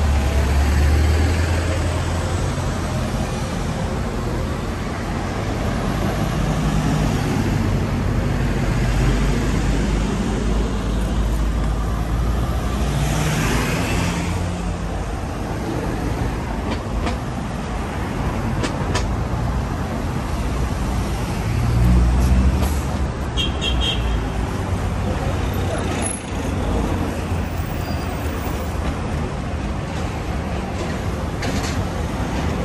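Road traffic with buses and cars passing, a steady low rumble that swells and fades. A brief hiss comes about halfway through, and a few short high tones follow a little later.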